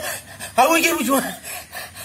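A man's drawn-out moaning cry, heard as "aao", starting about half a second in and rising then falling in pitch: a theatrical moan of pain.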